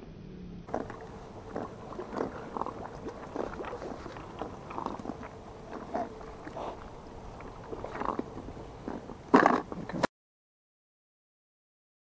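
Irregular small clicks and knocks from handling a plastic bait box and bucket of live crabs on the rocks, with a louder clatter near the end. The sound then cuts off abruptly into silence about ten seconds in.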